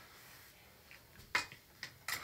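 A plastic makeup compact set down on a stone countertop: one sharp tap about a second and a half in, with a couple of faint clicks around it, over quiet room tone.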